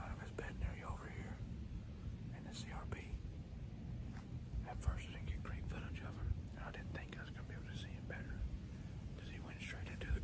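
A man whispering in short hushed phrases, with a low rumble underneath.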